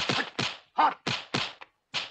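Kung fu film fight sound effects: a quick series of punch-and-block whacks, about three a second.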